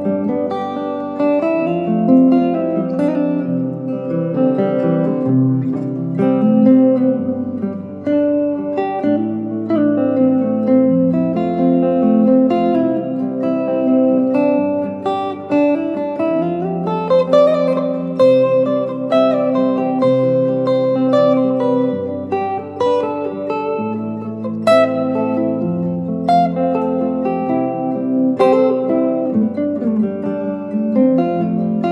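Semi-hollow electric guitar improvising melodic lines built from triads with added scale notes, following a chord progression. Low held notes underneath change pitch every couple of seconds.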